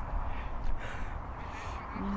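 Wind rumbling on the microphone in an open field, with two short, harsh, noisy sounds, the first about half a second in and the second about a second and a half in.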